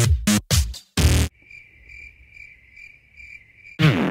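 Electronic music breaks off in a few chopped stutters, then a cricket-chirp sound effect plays alone: a thin, high chirp repeating about twice a second. The music comes back in loud just before the end.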